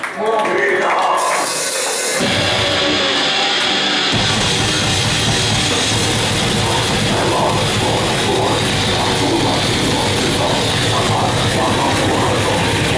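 Live heavy metal band starting a song: distorted guitar comes in about two seconds in, and the full band with drums from about four seconds, dense and loud.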